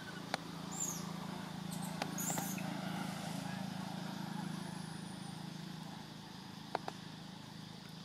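A steady low motor-like hum, with a few sharp clicks and snaps over it: one just after the start, two a couple of seconds in, and two close together near the end.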